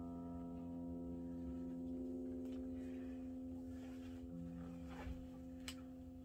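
An electric guitar chord left ringing after a strum, its notes sustaining and slowly fading away. A couple of small clicks come near the end.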